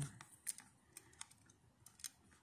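A handful of faint, sharp clicks from a small metal tripod being screwed by hand into the threaded tripod socket on the underside of a plastic-bodied mini projector.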